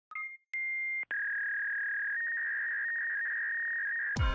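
Synthesized electronic beep tones of a retro computer-terminal sound effect: a short two-note blip, then a steady high beep that cuts off about a second in, followed by a long steady high tone that steps slightly up in pitch about two seconds in.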